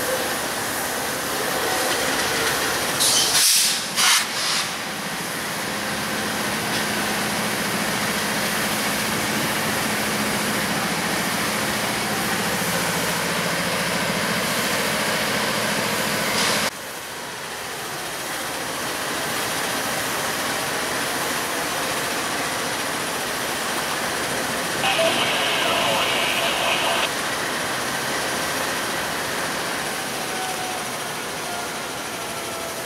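Two GE C44-9W diesel-electric locomotives of a stopped freight train idling with a steady rumble. There are two brief hissing bursts about three to four seconds in.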